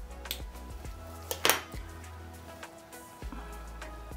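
Background music with a steady low bass, and a sharp snip about a second and a half in: a nail tip cutter clipping the end off a plastic false nail tip.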